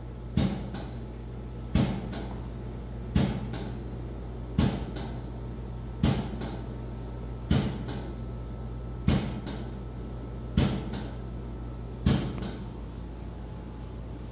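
Hydrostatic test pump stroking at a steady pace, a sharp double clack about every one and a half seconds over a steady low hum, as it pressurizes an extinguisher cylinder toward a 3,000 psi test pressure.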